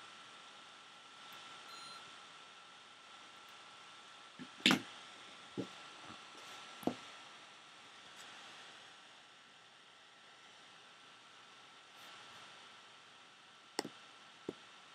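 Faint room hiss with a few short knocks and clicks from a webcam being handled and turned: the loudest about five seconds in, two smaller ones over the next two seconds, and a quick double click near the end.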